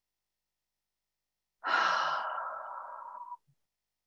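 A person breathes out one long, audible sigh about a second and a half in. It is loudest at its start and fades over nearly two seconds: a deliberate deep breath taken on cue.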